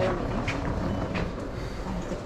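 Shop background noise: a steady low rumble and murmur of the busy store, with a few light clicks and rustles from cosmetic packaging being handled on the shelf.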